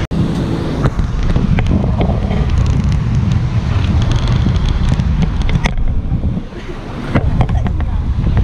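Wind buffeting the microphone over the road noise of a car moving in traffic, easing off briefly for a moment near the end.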